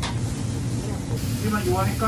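Deli shop background noise: a steady hiss over a low hum, with a faint voice near the end.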